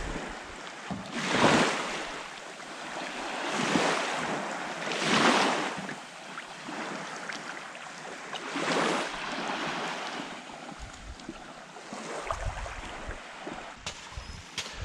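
Small waves washing onto a sandy beach, the wash swelling up four or five times at irregular intervals of a second or more, with some wind on the microphone.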